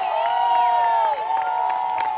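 Large audience cheering: many voices holding long, overlapping whoops and shouts.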